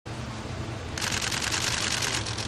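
Many camera shutters clicking in rapid, overlapping bursts, starting about a second in, over a steady low hum.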